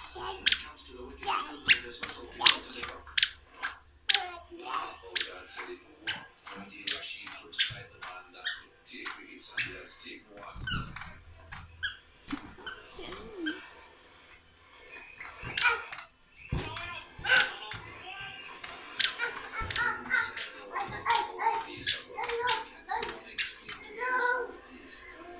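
Many short, sharp squeaks and taps from rubber balloons being handled and knocked about, with a toddler's voice heard now and then.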